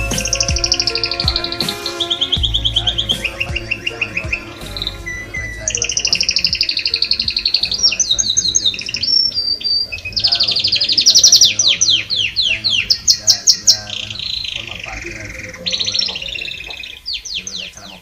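Birds chirping: repeated high downward-sliding whistles and fast trills, over the low tail end of a hip-hop beat.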